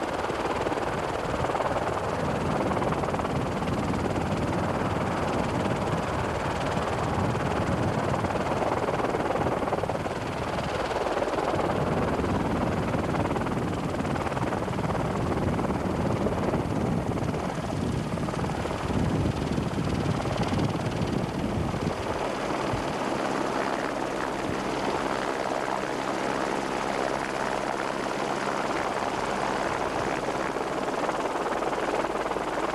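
Helicopter running steadily, heard from aboard: a continuous rotor and engine noise with no let-up, joined by a steady low hum from about two-thirds of the way through.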